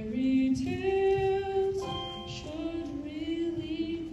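A woman singing long held notes over musical accompaniment in a live stage musical, the pitch stepping to new notes every second or so.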